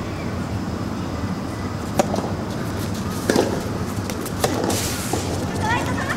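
Soft tennis rally: rackets strike the rubber ball with a sharp pock about two seconds in, then again roughly every second, with a fainter hit about five seconds in.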